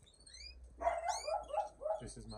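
Caged canaries chirping with short, quick, falling calls. About a second in, a louder wavering call joins them and is the loudest sound.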